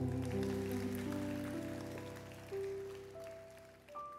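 The closing notes of a slow ballad on piano: a few soft single notes over a held chord, ringing and fading away quietly.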